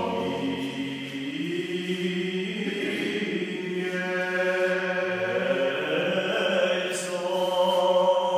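A small ensemble of men singing Corsican sacred polyphony a cappella. Several voices hold long notes in close harmony, with the parts shifting slowly. The church gives it a reverberant sound.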